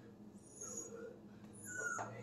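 A dog whining faintly, with a thin high whine that slides slightly down near the end.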